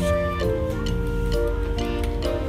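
Background music: a melody of held pitched notes, with a few light clicks among them.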